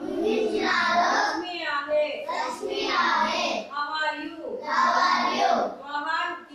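A group of young children chanting together in unison, a sing-song recitation in short phrases with brief pauses between them.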